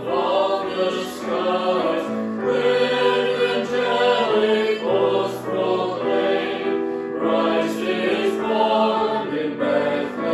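A small mixed choir of men and women singing a hymn in harmony, with electronic keyboard accompaniment holding steady low notes that change in steps.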